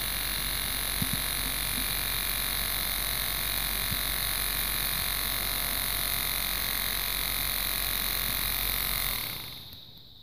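Battery-powered light-up spinner wand running: a steady electric buzz from its spinning motor, which dies away about nine seconds in as the toy stops.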